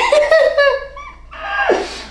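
A man laughing in a high pitch, with a second burst of laughter about a second and a half in.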